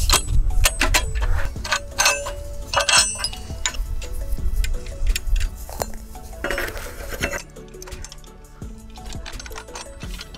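Metal clinking and clanking of steel hand-auger rods and their coupling being handled and joined, sharp knocks with short ringing, thickest in the first three seconds and thinning out after about seven seconds.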